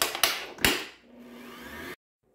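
Kenwood stand mixer: a few loud clunks as the tilting head is lowered onto the bowl, then about a second in the motor starts and runs with a steady low hum as the K beater mixes buttercream frosting.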